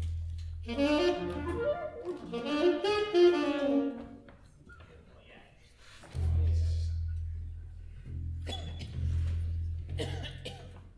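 Saxophones playing a few short, loose phrases in the first four seconds, as if warming up or trying out a passage before a tune. Underneath is a low steady tone that comes in at the start and again about six seconds in.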